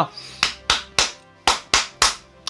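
Six sharp percussive hits in two quick groups of three, each with a short ringing tail, over faint background music: a percussion sound effect or drum accents in the music bed.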